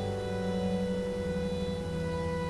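Church organ holding slow, sustained chords, moving to a new chord shortly after the start.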